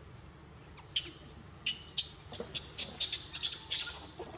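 Steady, high-pitched drone of forest insects, with a bird chirping sharply and rapidly over it from about a second in.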